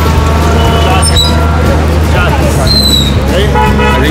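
Busy night-market street noise: many voices of a crowd over running traffic, with short toots among them.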